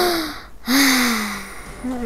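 A boy's voice making two breathy outbursts without words, the second longer and falling in pitch.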